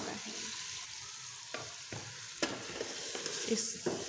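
Keema and cauliflower sizzling in hot oil and spices in an aluminium pressure cooker, a steady frying hiss, with a few sharp knocks of a spoon against the pot about halfway through as the mix is stirred.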